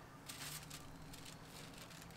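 Faint rustling and light clicks of a sheet of cardboard being picked up and moved over a canvas by gloved hands.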